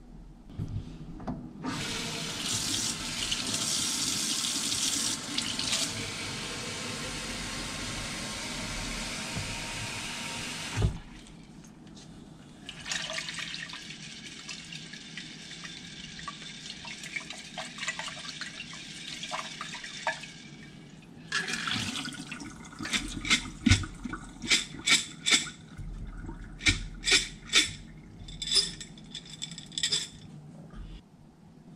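Kitchen tap water running into a mason jar of sprouting popcorn kernels to rinse them, cut off about ten seconds in. Water then drains out through the jar's mesh sprouting lid into a stainless steel sink. Near the end the jar is shaken in a quick string of sharp splashes to drain off the last of the rinse water.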